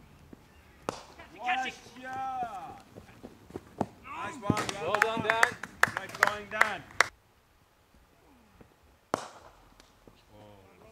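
Voices calling out across an open cricket field, with a run of several sharp impacts among them in the middle; quieter after that, then one more sharp impact near the end.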